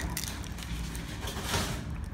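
Eggshell being pulled apart by hand and a raw egg dropping onto a bowl of curry rice: a small click at the start, a few faint ticks, and a brief rustle about one and a half seconds in.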